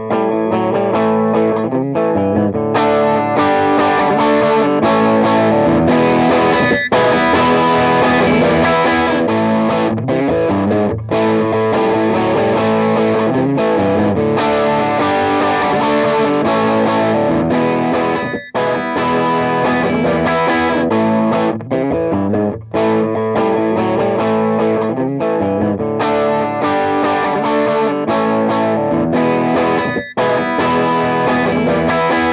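Electric guitar played through a TC Electronic MojoMojo overdrive pedal, giving a moderately overdriven tone with continuous chords and lead lines. Brief gaps fall between phrases.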